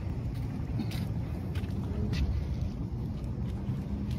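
Wind rumbling on a phone's microphone, with a few faint clicks.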